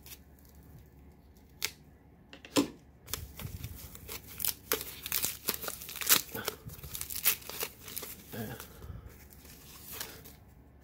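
Small scissors snipping a few times through a foam packing pouch, then several seconds of dense crinkling and tearing as the foam and plastic wrap is pulled off a stack of trading cards.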